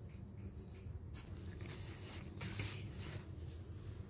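Faint soft rustling and scratching as a gloved hand mixes flour, oil and salt in a plastic bowl, a few brief swishes over a low steady hum.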